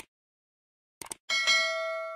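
Subscribe-button animation sound effects: a mouse click, a quick double click about a second in, then a notification-bell chime struck twice that rings on.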